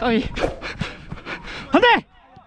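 A footballer panting hard and fast while running during a match. Short shouted calls from players come right at the start and a loud one near the end.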